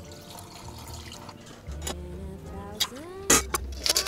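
Water being poured from a stainless steel bowl through a glass funnel into a container, with a man humming over it. Two sharp clinks about three seconds in, the first the loudest.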